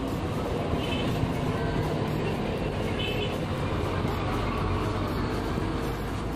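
Steady low rumble of road traffic, with faint voices and music in the background.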